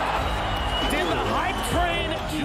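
A man's voice, as from a fight commentator, over arena crowd noise and background music.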